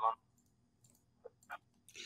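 Near silence with two faint short clicks about a second and a half in, the lip and mouth clicks of a man about to speak.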